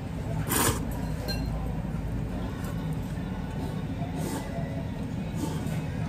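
Thick ramen noodles being slurped: one short, loud slurp about half a second in, then fainter eating noises over a steady low hum.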